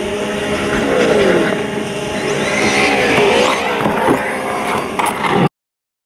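Traxxas Slash 4x4 RC truck running on pavement, its on-board audio speaker playing a simulated engine that revs up and down several times. The sound cuts off suddenly near the end.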